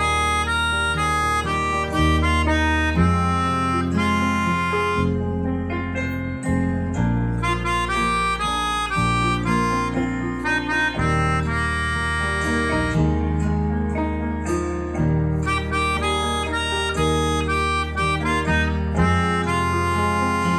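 Melodica blown through a flexible mouthpiece tube, playing a slow melody of held notes, with steady low bass notes beneath that change every second or two, like a recorded accompaniment.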